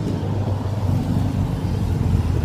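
Steady low rumble of a nearby motor vehicle's engine in street traffic.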